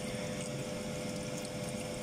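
Chicken sambusas deep-frying in hot oil in a stainless steel pan, the oil sizzling and bubbling steadily, with a steady hum underneath.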